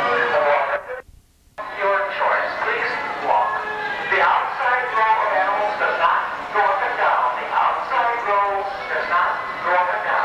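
Carousel band organ playing a tune, with the sound cutting out for about half a second near the start.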